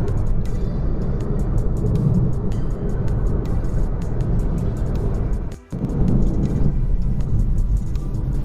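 Background music over the steady rumble of a car driving on a highway, heard from inside the cabin, with a brief dropout about five and a half seconds in.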